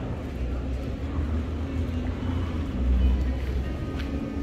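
A low, uneven rumble of outdoor ambience that swells about three seconds in, with faint music in the background.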